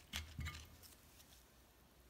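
A few faint, light metal clicks as a Turbo 400 front pump's steel gear is lifted out of the pump body by gloved hands, in the first half second, then near silence.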